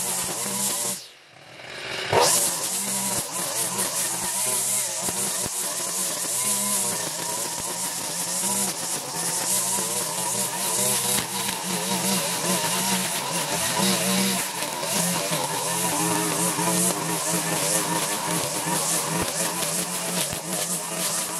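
Petrol string trimmer (weed eater) running at cutting speed, its engine note wavering up and down as it works through grass. The sound drops away briefly about a second in, then comes straight back.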